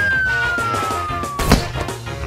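Cartoon falling-whistle sound effect: a single whistle tone gliding steadily downward as the bubble-gum balloon deflates and the larva drops. It ends in a thump about one and a half seconds in as the larva lands, with cartoon music underneath.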